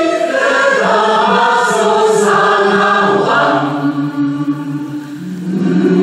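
Large choir singing held chords: higher voices carry the first half, lower voices hold long notes after the midpoint, and after a brief dip the full choir comes back loudly on a held chord near the end.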